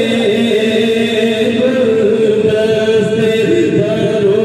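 Devotional Sufi zikr chanting by voice, holding long notes that rise and fall slowly without a break.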